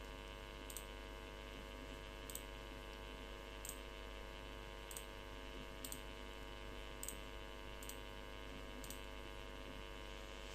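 Faint computer mouse clicks, about eight of them spaced a second or so apart, over a steady electrical hum.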